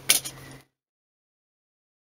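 A single short click of fingers handling the tablet's plastic casing, then the sound cuts out to dead silence about half a second in.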